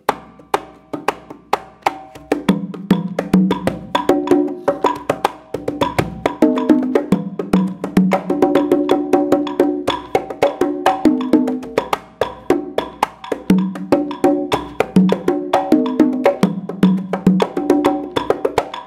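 Three conga drums played by hand in a fast guarapachangueo rhythm, improvised within a clave-anchored pattern. Low tones, higher open tones and sharp slaps alternate in a dense run of strokes.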